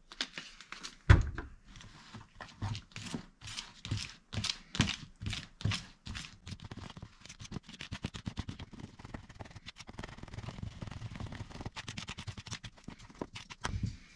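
Metal spoon stirring a thick mix of oats, cocoa powder and a little water in a plastic container, clicking and scraping against its sides, quicker and steadier in the second half. A single sharp knock about a second in is the loudest sound.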